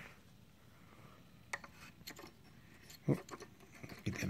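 Quiet handling noise from an autoharp's aluminium chord bars being handled: a few light clicks, then a louder short knock about three seconds in.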